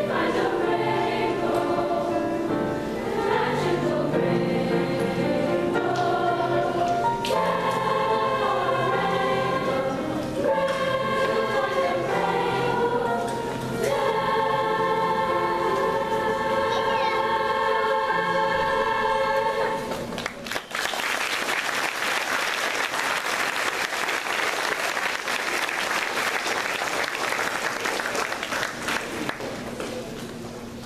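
Girls' chorus singing with piano accompaniment, ending the song on a long held chord. About two-thirds of the way through, the singing stops and the audience applauds.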